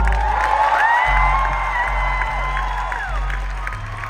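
Live band music: a held lead line that slides up about a second in and falls away near the end, over changing bass notes, with faint crowd cheering.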